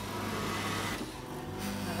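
Automatic bean-to-cup coffee machine running as it makes a cappuccino: a noisy whirr for about a second and a half, then a steady hum as it dispenses into the cup.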